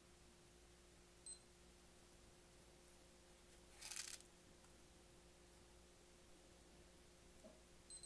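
Metene TD-4116 blood glucose meter beeping: a short high beep about a second in as the test strip takes up the control-solution drop and the countdown starts, and another near the end as the result comes up. A brief rustle of hands handling the meter falls between them, over a faint steady hum.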